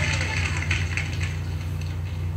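Steady low hum with hiss from an old recording, with a faint echo in the hall dying away in the first second.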